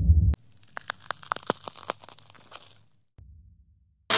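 Intro sound effects for an animated countdown. A deep low boom cuts off abruptly just after the start, and then about two seconds of faint, irregular crackling clicks follow.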